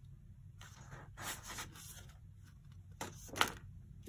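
Cardstock being handled, giving a few short rustles and scrapes, the sharpest about three and a half seconds in.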